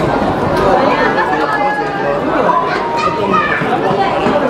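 Many people talking at once: a steady, loud babble of overlapping voices with no single speaker standing out.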